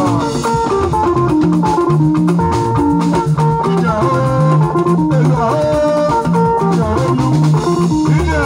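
Live band music: electric guitar melody lines with sliding notes over a steady bass line, a drum kit and hand drums.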